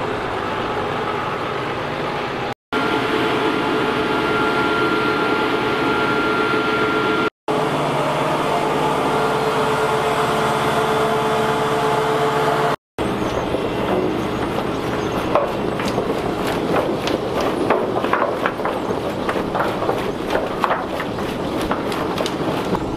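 Carrot-handling machinery running steadily with a hum: a Grimme hopper-loader and elevator, and a tractor pulling a loaded trailer. The sound breaks off in three brief silent gaps. In the second half, carrots rattle and clatter densely as they travel up the elevator conveyor.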